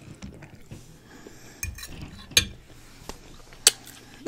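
Metal fork clinking against a glass dish of food: about five sharp clinks, the loudest a little past halfway, with faint chewing in between.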